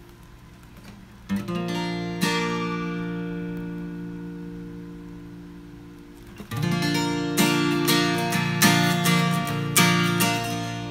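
Capoed acoustic guitar strummed: a chord about a second in and another just after, left to ring and fade slowly for several seconds, then a run of strummed chords in the last few seconds.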